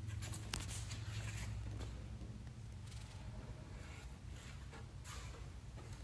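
Faint rustling and scraping of gloved hands handling a carbon-fibre scoop, with a single sharp click about half a second in, over a steady low hum.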